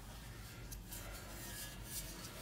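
Faint rubbing and handling noise as a hand turns a four-into-one exhaust header over on the floor.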